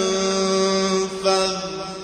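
A man's solo voice reciting the Quran in melodic tajwid style, holding a long vowel on one steady pitch. The note breaks about a second in, then carries on and fades toward the end.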